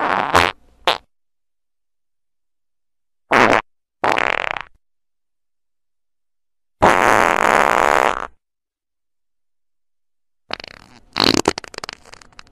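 Fart sounds edited together as a string of separate bursts with dead silence between them: short ones at first, then a longer one of about a second and a half, and a crackly, clicking one near the end.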